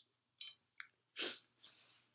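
A person eating: small wet mouth clicks of chewing, then a short, sharp burst of breath through the nose and mouth just over a second in, fading into a softer exhale.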